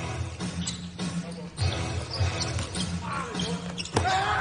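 Basketball being dribbled on a hardwood court, bouncing about twice a second.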